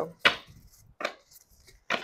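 A deck of tarot cards shuffled by hand, with two sharp slaps of the cards, the second about a second in.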